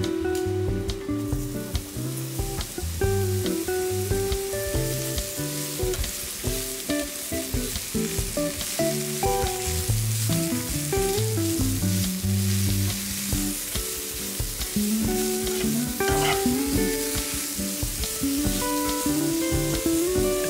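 Mushrooms sizzling in hot oil in a frying pan. The sizzle sets in about a second in as they go into the pan, with guitar music playing underneath.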